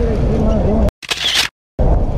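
Rough action-camera audio: loud rumbling noise on the microphone with a voice faintly in it, chopped into three short pieces by two abrupt cuts to silence, about a second in and again just after halfway.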